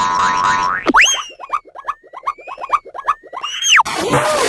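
Cartoon boing sound effects: a short buzzy tone, then a quick springy upward glide, a rapid run of short rising boings about five a second, and a final glide up and back down near the end.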